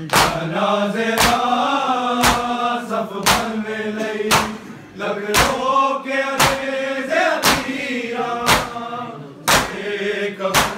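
Men reciting a noha in unison, chanted without instruments, over loud chest-beating (matam) slaps that fall about once a second in steady time. The singing drops briefly about five seconds in, and the beating keeps on.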